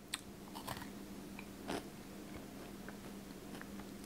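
Faint chewing of a Kit Kat chocolate wafer bar: a few soft crunches of the wafer, a little over a second apart, over a steady low hum.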